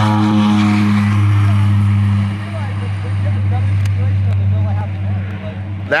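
Propeller airplane engine running with a loud, steady low hum. It eases off about two seconds in and carries on more quietly.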